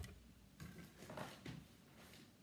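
Near silence: room tone with three faint, short soft knocks about half a second apart, in the first two-thirds.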